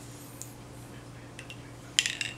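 A few faint small clicks, then one sharp clink near the end from a metal spoon knocking against a ceramic mug as it is lifted to drink, over a steady low hum.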